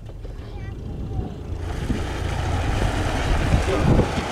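A vehicle moving off and gathering speed on a dirt road while towing a board sled on a rope: a low engine hum and a rush of road noise that start about a second and a half in and keep building.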